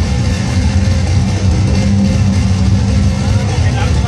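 Hardcore punk band playing loud and live: distorted guitar and bass in a dense, sustained wall of sound, with a shouted voice over it.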